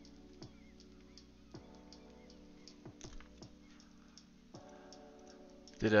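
Quiet background music of sustained chords, changing twice, with scattered faint clicks from trading cards being handled.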